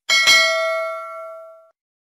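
Notification-bell 'ding' sound effect of a subscribe-button animation: a bright bell chime struck twice in quick succession, ringing out and fading away by about a second and a half in.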